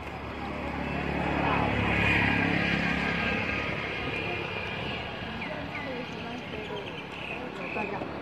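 A motor vehicle passing: a low engine hum swells over the first two seconds and then fades, with faint voices underneath.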